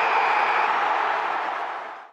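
A steady rushing noise with no bass under it, part of the end-card outro sound, fading out at the very end.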